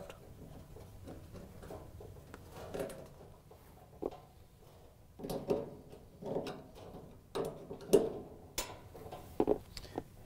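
Faint, scattered metal clicks and scrapes from a flathead screwdriver working a Tinnerman push-nut clip onto the end of a dryer drum roller shaft against the steel support bracket. The knocks are sparse at first and come more often in the second half.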